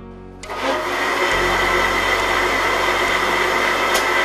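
Electric countertop blender switched on about half a second in, running steadily with a high whine as it blends a liquid.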